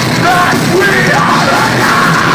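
A deathcore band playing live and loud: distorted guitars and drums, with yelling over the top.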